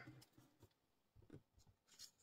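Near silence with a few faint, brief sounds of paper being handled as the pages of a colouring book are held and touched.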